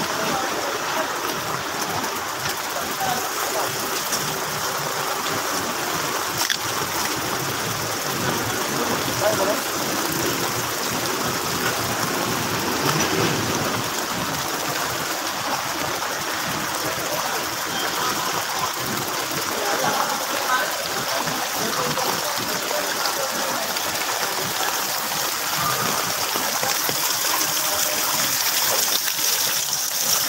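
Steady hiss of rain and floodwater on a flooded street, with faint voices of people around in the background.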